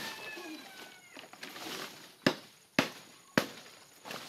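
Three sharp chops of a blade into palm-frond stalks, about half a second apart, in the second half. Before them comes a brief cry that falls in pitch.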